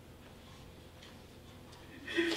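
Quiet room tone in a hall: a faint low hum with a faint steady tone and a few faint ticks.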